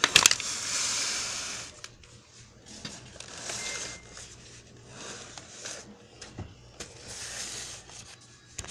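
Close handling noise: a quick run of clicks at the start, then four rubbing, scraping noises about a second each, with a few single clicks between them.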